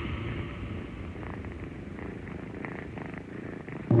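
Dark ambient noise music: a low, rumbling drone with faint crackling over it, sinking quieter, until a much louder, bass-heavy passage cuts in suddenly just before the end.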